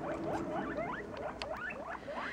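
Guinea pigs squeaking: a quick run of short, faint rising squeaks, about five a second.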